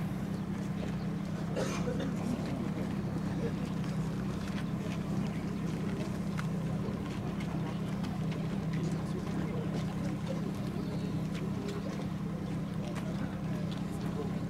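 Portable fire pump's small engine running steadily with an unbroken low drone, the pump feeding hose lines from a water tank.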